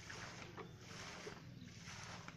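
Faint outdoor background noise: a low steady rumble with a light hiss over it.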